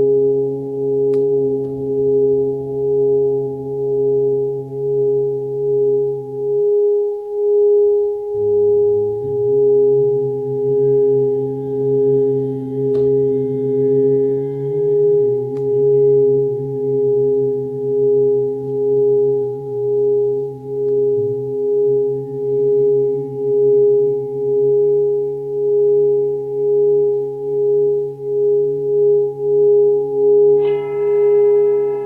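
A singing bowl gives a sustained ringing tone that pulses slowly and evenly, about once a second, over lower humming tones. It holds steady without dying away, as when the bowl's rim is rubbed continuously. The lower tones drop out briefly about seven seconds in.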